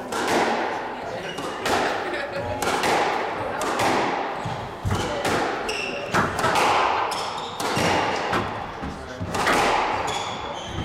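Squash rally: the ball cracking off the racquets and the walls of the court about once a second, each hit echoing around the court. Short squeaks of shoes on the wooden floor come in between the hits.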